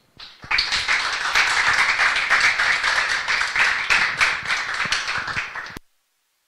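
Audience applauding, many hands clapping at once. It starts about half a second in and is cut off abruptly near the end.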